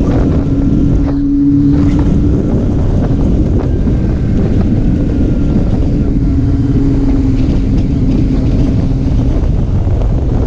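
Sport motorcycle cruising at steady speed: heavy wind rushing over the on-board camera microphone, with the engine's steady hum underneath.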